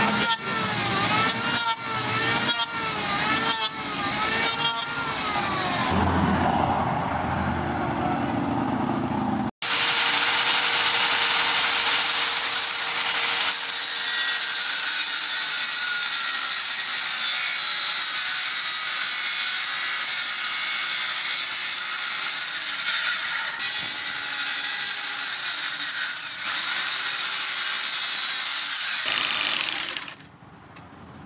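Electric hand planer shaving a wooden board in repeated strokes, about one a second, its motor note dipping and recovering with each pass. Then a corded circular saw cuts through a wooden board steadily for about twenty seconds and stops just before the end.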